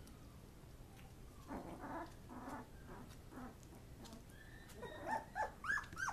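Eighteen-day-old Labrador Retriever puppies whimpering: a few short, rough cries about a second and a half in, then a quick run of high-pitched squeals near the end, the loudest part.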